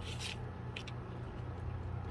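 Small plastic squeeze bottle of crazy glue being handled and squeezed onto thin wooden craft pieces: a short hiss at the start, then two light clicks a little under a second in, over a steady low hum.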